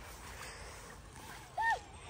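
Faint rustling of leafy undergrowth as children push through it on foot, with one short high call near the end, its pitch rising and then falling.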